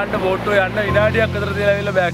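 Mostly a man talking, over a steady low hum that grows stronger about a second in.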